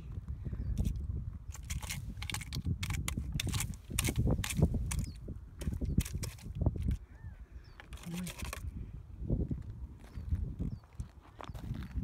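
Footsteps crunching irregularly on rocky desert gravel, over a constant low rumble on the microphone.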